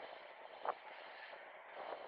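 Steady rolling noise of inline skates on the road surface during a race, with one brief sharp sound about two thirds of a second in.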